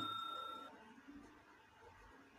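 A bell-chime sound effect ringing out and dying away over the first moment or so, then near silence.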